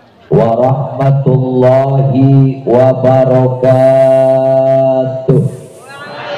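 A man chanting into a microphone over a PA: several short melodic phrases, then one long held note near the end.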